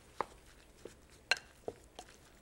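Wooden spatula knocking against a glass mixing bowl while stirring a ground pork sausage mixture: a few sparse, light clicks, the sharpest just over a second in.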